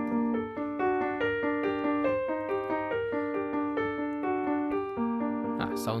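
Piano tone from a digital keyboard playing a flowing one-hand arpeggio pattern through minor chords in G harmonic minor. Overlapping notes are left to ring and the pattern stops just before the end.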